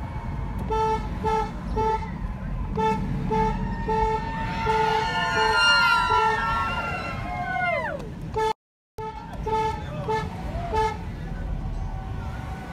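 Car horn honking in a quick run of short toots, then several voices cheering and whooping for a few seconds, then another run of short toots after a brief dropout in the sound.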